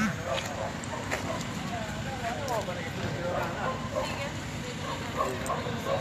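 Faint talk from bystanders in the background over a steady low street and engine noise.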